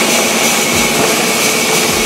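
Horizontal band sawmill cutting through a log, a loud steady rushing noise that stops abruptly at the end.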